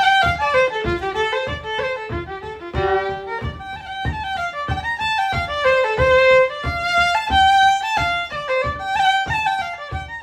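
Solo fiddle playing an Irish traditional tune in G minor, a single melody line of quick bowed notes with no accompaniment.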